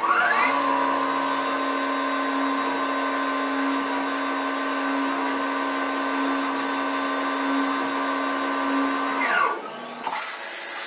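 Tormach 1100MX CNC mill spindle spinning up with a rising whine, then running at a steady pitch while machining under flood coolant, with a hiss of coolant spray. Near the end the spindle winds down with a falling whine as the operation finishes.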